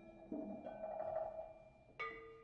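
Live percussion ensemble playing softly on mallet instruments: a ringing tone fades out at the start, then a soft shimmering cluster of notes swells about a third of a second in and dies away. A new struck chord comes in right at the end.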